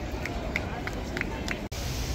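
Outdoor crowd chatter with a scatter of short, high blips. About three-quarters of the way through, the sound cuts out for an instant and switches to a steadier, hissier outdoor ambience.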